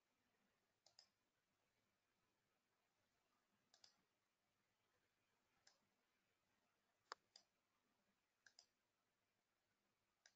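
Faint computer mouse clicks, about nine in all, some single and some in quick pairs, spaced a second or more apart.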